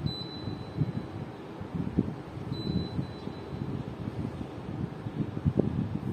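Split air conditioner's indoor unit beeping as it receives commands from a universal remote: one beep of about a second at the start, then a shorter beep about two and a half seconds in. The beeps sit over low background noise.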